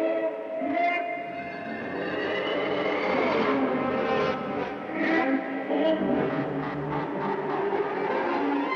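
Vintage cartoon soundtrack: a dense mix of pitched music and sound effects, with a slowly rising whistle-like tone about two seconds in and a quick run of clacks around six seconds.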